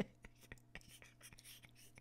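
Near silence: faint room tone with a steady low hum and scattered faint clicks, opening with one brief click.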